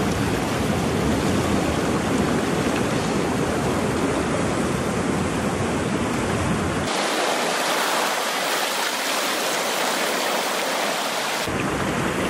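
Sea surf washing in among coastal rocks: a steady rush of water. Its deep rumble drops away about seven seconds in and returns near the end.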